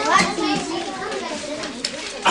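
Several young children talking over one another in a classroom.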